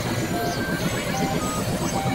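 Dense experimental noise music: several music tracks layered together and processed into a thick, steady wash of sound, with short scattered tones flickering through it.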